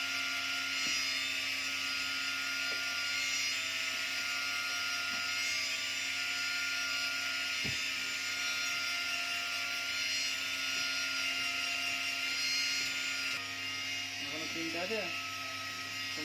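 Steady whine and hum of a small electric motor running, easing slightly near the end, with a voice briefly near the end.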